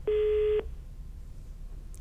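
A single telephone line tone, one steady beep lasting about half a second right at the start, as a caller's line is put through to the studio; after it only a faint low hum remains.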